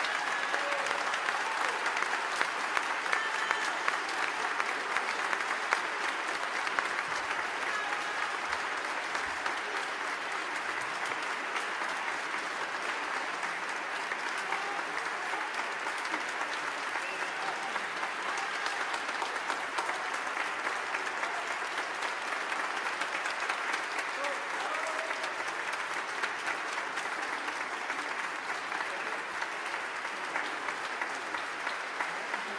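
Audience applauding, a dense steady clapping that holds throughout, with voices mixed in among the crowd.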